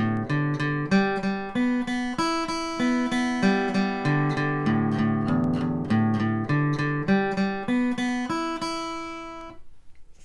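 Steel-string acoustic guitar flatpicked one string at a time in a steady picking pattern over changing chords, the notes ringing into each other. The playing stops and rings out shortly before the end.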